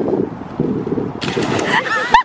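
A person jumping into a swimming pool: a loud splash of water hits a little over a second in and runs on to the end.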